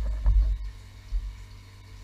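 Dull low thumps of the camera and tripod being handled, a cluster in the first half second and one more just after a second in. Under them, the steady hum of the running DIY Pelton wheel turbine rig.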